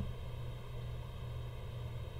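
Room tone: a steady low hum with a faint even hiss, and one faint click right at the start.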